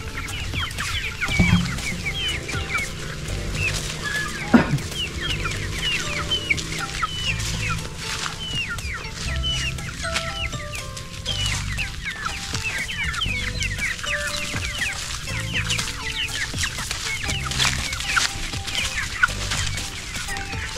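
Chickens calling, with many short, high calls that drop in pitch heard throughout, over background music.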